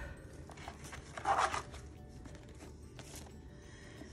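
Tissue paper rustling and a spiral-bound planner being handled and lifted out of its cardboard box, with one louder rustle about a second in. Faint background music underneath.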